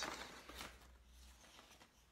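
Faint rustling and handling of a gift package's contents, with a soft click or two, fading to near silence.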